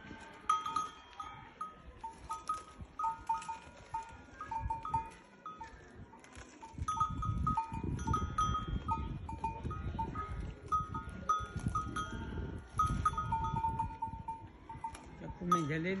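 Small bells worn by livestock clinking irregularly and repeatedly as the animals move, with a low rumble that grows louder about seven seconds in. A short voice sounds at the very end.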